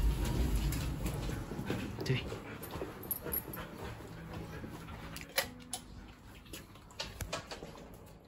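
Border collie giving a short, rising whine as it pulls on its leash. A low rumble fills the first second, and a few sharp clicks come later.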